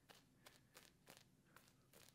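Faint, quick, soft swishes of a shaving brush working soap lather over the neck and jaw, several strokes a second.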